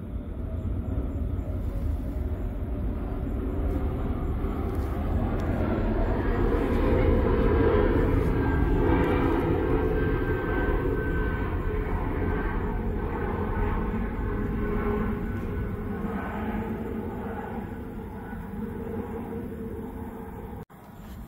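Electrolysis bath fizzing as gas bubbles stream off a rusty tool, over a steady low rumble. The sound swells for several seconds and then eases off.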